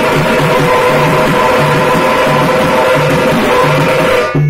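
A group of tamate frame drums and large bass drums beaten with sticks in a fast, continuous rhythm, with a sustained melody of held notes over it.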